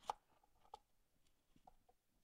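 Near silence, broken by a few faint short clicks: one at the start, one about three-quarters of a second in, and a couple near the end.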